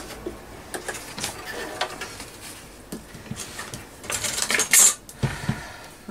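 Light clicks and clatter of a stitched piece of card being handled after machine sewing. A louder papery rustle comes about four seconds in and a low thump just after.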